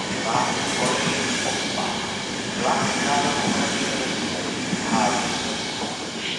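Passenger coaches of a departing train rolling past on the track: a steady rumble and hiss of wheels on rail, with the last coach passing near the end.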